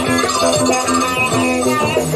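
A 1970s Barcelona progressive rock recording, guitar-led over bass.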